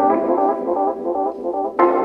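Music: an organ playing held chords that change every half second or so.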